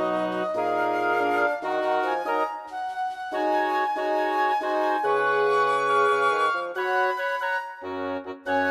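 Software MIDI playback of a wind quintet arrangement: synthesized flute, oboe, clarinet, horn and bassoon voices playing a cartoon theme tune in block chords and a moving melody. The music breaks off briefly at the very end for a rest.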